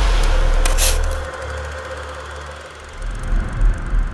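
Cinematic logo sting sound effect: a deep bass rumble under a bright hissing swell that fades within the first second or so, then a lower rumble with a few deep thuds near the end.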